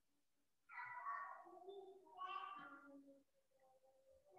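Two faint, drawn-out pitched calls, each about a second long, the first about a second in and the second about two seconds in.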